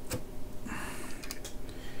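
A few light clicks and a short hiss as a circuit board is handled and pressed into the edge-connector card cage of an HP 4261A LCR meter: clicks just after the start, a brief hiss just before a second in, then more clicks a little later.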